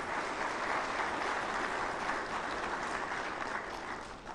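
Audience applauding, a steady spread of clapping that dies away near the end.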